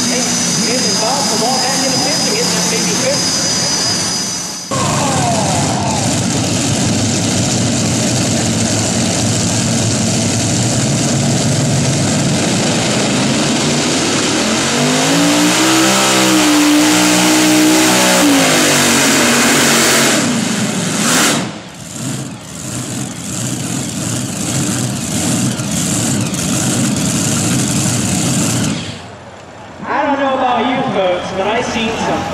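Modified pulling tractor engines running loud. A high steady whine sits over the engine noise for the first few seconds, then after a sudden cut a steady engine noise, and about halfway through an engine revs up and back down over a few seconds; the sound changes abruptly twice more in the second half and drops away shortly before the end.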